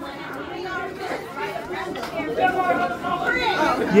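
A group of people chatting at once, several voices overlapping with no single speaker standing out.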